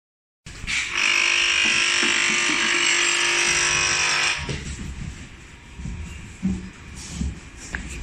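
Nespresso-capsule sealing machine running its sealing cycle: a loud, steady electric buzz for about four seconds while the nine-capsule tray is drawn in under the sealing head, then cutting off. Softer clunks and handling knocks follow near the end.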